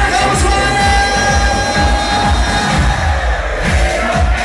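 Live pop song played loud over a PA with a steady dance beat; the singer holds one long note for about the first two seconds.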